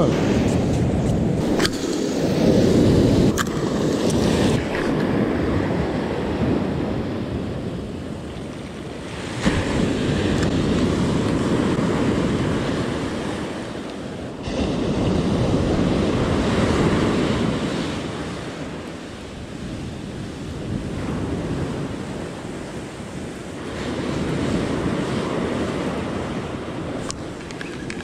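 Ocean surf in a high swell, breaking and washing up the beach in slow surges that swell and fade every several seconds, with wind on the microphone.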